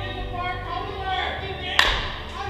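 A single sharp crack of a bat hitting a pitched ball near the end, the loudest sound here, over background music and chatter.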